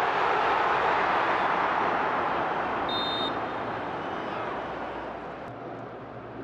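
Stadium crowd noise, loud at first after a chance in front of goal and dying away steadily. A short high whistle sounds about halfway through.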